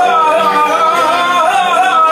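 Live rebetiko: a man singing an ornamented, wavering melody over an accompaniment of tzouras, santouri, violin and guitar.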